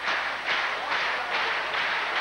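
Large arena crowd applauding, a steady unbroken wash of clapping.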